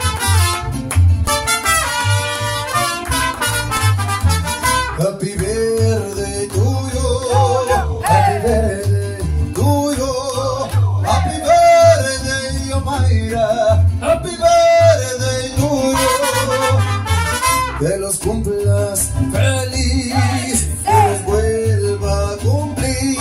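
Mariachi band playing a song, melody lines over a steady, regular bass beat.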